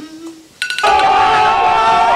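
An edited-in sound effect: a short chime about half a second in, then a loud meme audio clip of several held tones that starts just under a second in.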